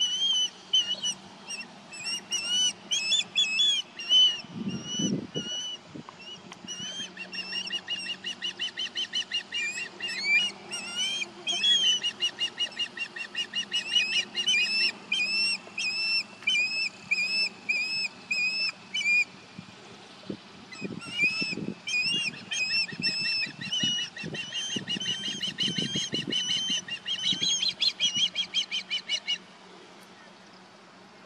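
Osprey territorial calling: a long run of rapid, high whistled chirps, several a second, with a short lull about two-thirds of the way through. The calls stop just before the end.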